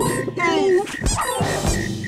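Cartoon cricket sound effect clicking in short high pulses, about six a second, under playful cartoon music with sliding notes and two sharp knocks.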